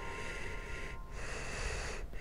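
Cartoon sleep-breathing sound effect for a sleeping child: soft, airy breaths with a short break about a second in.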